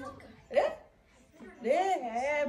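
People's voices in a room: a short, sharp vocal sound about half a second in, then a drawn-out voiced sound that rises and falls near the end, running into talk.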